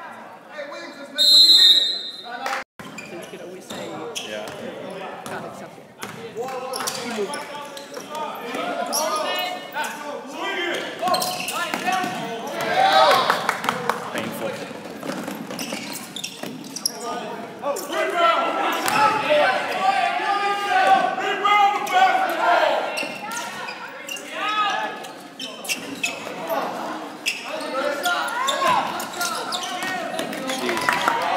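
Basketball game sounds in a gymnasium: a ball bouncing on the hardwood court, with players and spectators shouting throughout, loudest in the second half. A short, loud, high whistle blast sounds about a second in.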